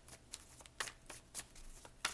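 A deck of tarot cards being shuffled and handled by hand: a few short, faint card snaps and flicks at irregular intervals.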